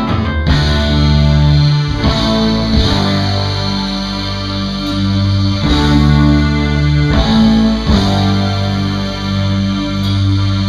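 Rock band playing live through a club PA: electric guitars with effects over held bass notes and drums, the chords changing every second or two, with a Nord Lead 2X synthesizer in the mix. An instrumental passage, with no singing.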